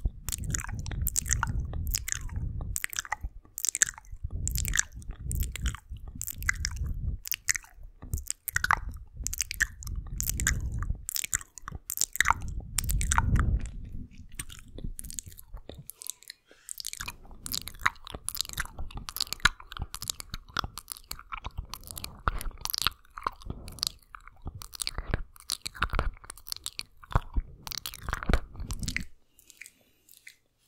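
Wet mouth sounds and tongue licking right on a Blue Yeti microphone's grille: a rapid, irregular stream of wet clicks and smacks. In the first half there are bursts of low rumble from close contact with the mic; these drop away about halfway through.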